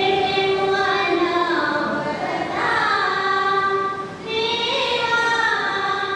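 A group of women singing a prayer song together into a microphone, in long held phrases with gliding pitch and a short breath about four seconds in.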